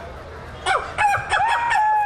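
A man's vocal imitation of a rooster crowing into a microphone. It starts a little under a second in with a few short rising notes, then a long held note.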